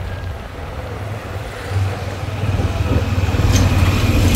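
Street traffic dominated by a bus's engine, a low rumble that grows louder over the last couple of seconds as the bus comes close alongside.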